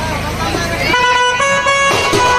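Live band-party folk music. A melody instrument plays held notes that step up and down in pitch, starting about halfway through, after a few gliding, voice-like notes, over the band's drumming.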